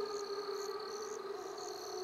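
Background soundscape of short high chirps, repeating about two or three times a second, over a steady hum.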